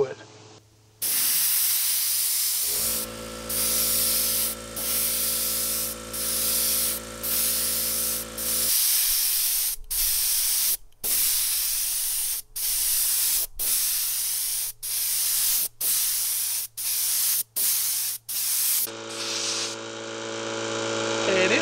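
Compressed-air spray gun, a gravity-feed cup gun spraying thinned lacquer, hissing in one long blast and then a string of short blasts about a second apart, one trigger pull for each pass across the board. An air compressor's motor hums for about six seconds early on, cuts out, and starts again at the very end.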